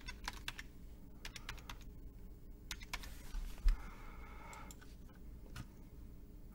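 Typing on a computer keyboard: quick runs of keystrokes, then sparser clicks, with a single dull thump about three and a half seconds in.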